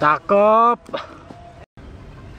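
A loud vocal cry: a short yelp falling in pitch, then a held call about half a second long, slightly rising.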